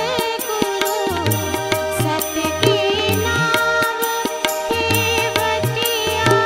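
A woman singing a melodic Indian song into a microphone, accompanied by steady held notes and regular hand-drum strokes.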